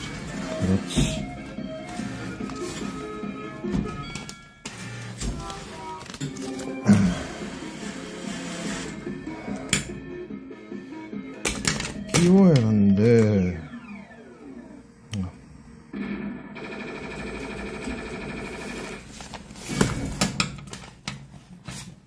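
Arcade claw machine's electronic music and jingles, with clicks and knocks from the crane mechanism and a voice at times.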